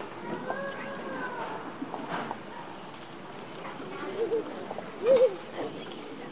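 Low murmur of an audience, with a few short high voice sounds from a young child: one drawn-out call that rises and falls about half a second in, then brief wavering calls about four and five seconds in, the last the loudest.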